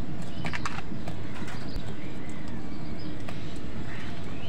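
House crows' beaks pecking and knocking in a plastic food bowl, a quick cluster of clicks about half a second in, with a few short bird chirps over a steady low rumble of background noise.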